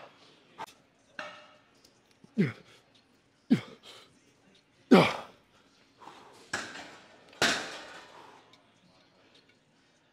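A man grunting with effort through the last reps of a heavy cable chest press: three short, forceful grunts that drop sharply in pitch, about a second or so apart, then two heavy breaths out as the set ends.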